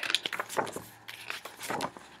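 A picture book being handled, opened and its pages turned: a scatter of soft paper rustles and light clicks, busiest in the first second and fainter after.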